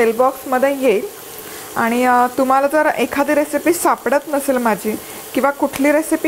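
Chopped onions frying in hot oil in a pan, sizzling steadily as they are stirred with a spatula, under a woman talking almost without pause; the sizzle is heard alone in a short lull about a second in.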